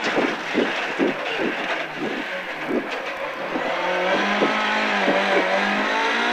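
Ford Mk2 Escort rally car's Pinto 8-valve four-cylinder engine heard from inside the cabin, working unevenly through a tight square-left corner. From about four seconds in it settles into a steady pull under acceleration.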